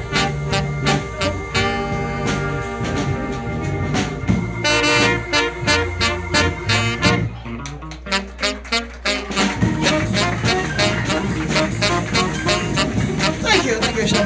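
A live soul band plays an instrumental passage without vocals, with held notes over a regular drum beat. The band thins out for a couple of seconds midway, then comes back in full.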